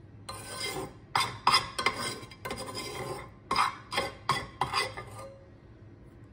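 Metal spoon scraping and scooping against stainless steel pots as broth is ladled over the layered bread: a run of about ten short scrapes over five seconds, stopping near the end.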